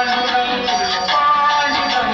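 Music with a sung melody, carrying long held notes over a continuous accompaniment.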